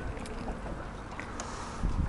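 Low, steady rumble of wind and water around a small aluminium fishing boat, with a dull thump near the end.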